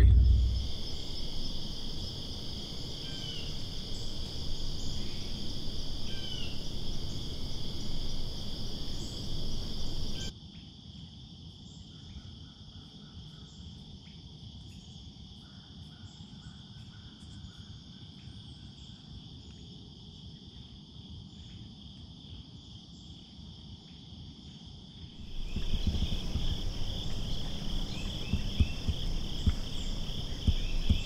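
Steady chorus of crickets and other insects chirping at two pitches. A louder low rumbling noise sits under it for the first third and again over the last few seconds.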